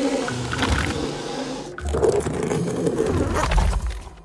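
Cartoon background music, mixed with sound effects.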